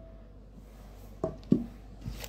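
A ceramic plate knocking lightly against a cooking pot twice, about a quarter second apart, a little after a second in, as chopped vegetables are tipped into the pot. At the start, the ring of an earlier knock fades out.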